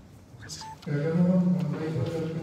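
A short faint beep, then a person's voice starts about a second in, drawn out on a fairly steady pitch.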